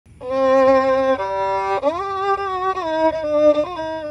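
Music: a single bowed string instrument playing slow held notes, sliding up in pitch about two seconds in.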